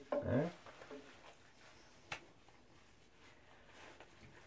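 Hands lathering a wet Great Dane puppy's soapy coat in the bath: faint rubbing and squishing, with a single sharp click about two seconds in.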